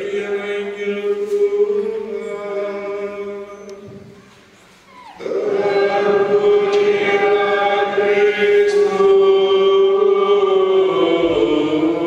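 Liturgical chant at Mass. A priest chants a phrase from the Gospel book, and it fades out about four seconds in. After a short pause a louder, longer sung phrase follows.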